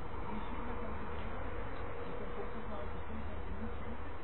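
A steady low buzzing hum with a thin constant tone running through it, under faint indistinct men's voices.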